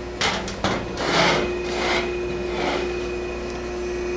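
A removed machine cover panel being handled and set down off to the side: two sharp knocks, then three swells of scraping as it rubs along a surface. A steady hum runs underneath.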